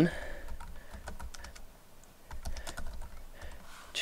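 Computer keyboard typing: a string of light key clicks entering a short text label, with a brief pause in the middle.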